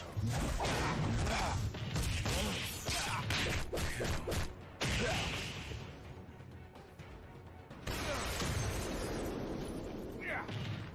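Soundtrack of a pixel-art fight animation: background music under rapid whooshes, hits and crashes. The first half is dense with sharp impacts; it drops quieter for a couple of seconds past the middle, then a loud noisy burst of action returns near the end.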